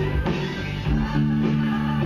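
Electric bass guitar playing a line of held notes over a band recording with drums and guitar, changing notes about a second in.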